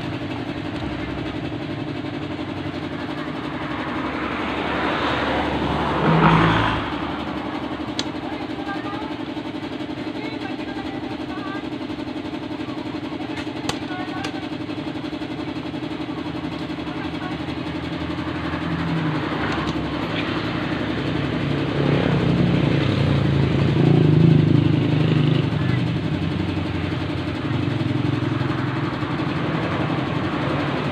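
Road vehicles passing, over a steady hum: the sound swells and fades once a few seconds in and again in the last third.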